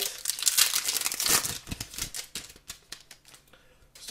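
Foil wrapper of a hockey card pack crinkling as the pack is opened and the cards are pulled out. It is dense for about the first two seconds, then thins to a few faint crackles.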